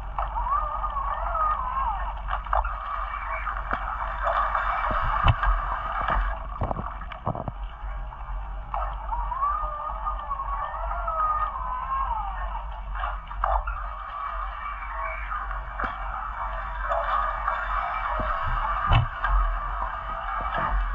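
Muffled underwater sound picked up through a camera housing: a steady low hum under a wavering whine, with scattered sharp clicks.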